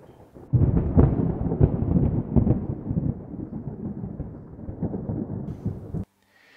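A loud, deep rumble that starts suddenly about half a second in, then slowly fades with irregular swells and is cut off abruptly at the end.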